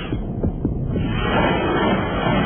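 Low throbbing hum from a TV advert's soundtrack, with a few soft pulses about half a second in.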